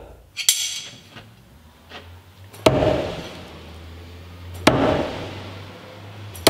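Steel throwing knife thrown at a wooden target, striking three times about two seconds apart, each hit a sharp thunk with a short ringing tail; the first hit is brighter and more metallic.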